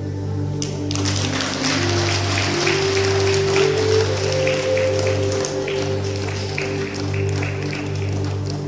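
Slow, calm background music with sustained drone-like tones. About a second in, audience applause joins it: a dense patter of clapping that continues alongside the music.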